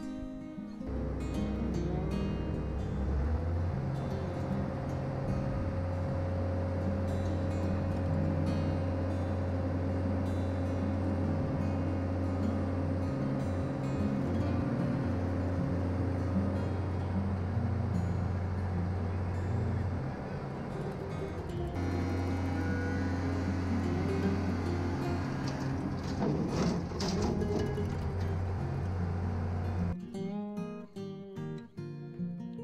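Excavator's diesel engine running steadily with a low hum, with acoustic guitar music over it; the engine note drops away briefly about twenty seconds in.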